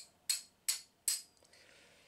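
Hammer striking the end of a steel hand stone-carving chisel: three sharp metallic taps, evenly spaced about 0.4 s apart, each with a brief ring.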